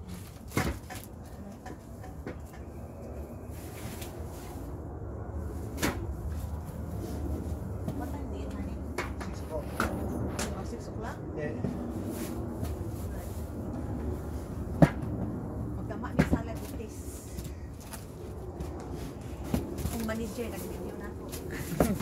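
Polystyrene foam boxes being handled, their lids lifted off and set back: scattered knocks and scrapes, the sharpest knock about fifteen seconds in, under low background talk.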